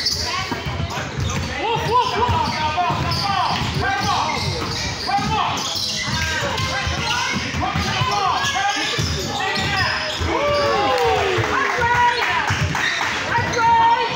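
Basketball game play in a large, echoing gym: the ball bounces on the court floor as players dribble and run, with many short squeaks from sneakers and voices calling out across the hall.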